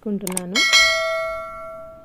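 Bell chime sound effect from a subscribe-button overlay: one bright ding about half a second in, ringing and fading away over about a second and a half.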